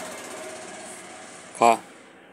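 A person's short, sharp "ha" about one and a half seconds in, the loudest thing here, over a steady background hum.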